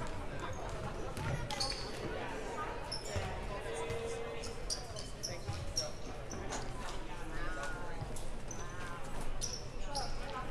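Basketballs bouncing on a hardwood gym floor, a low thump every couple of seconds, over the chatter of voices in the gym.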